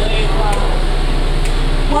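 Indistinct voices of people talking in a room, over a steady low hum.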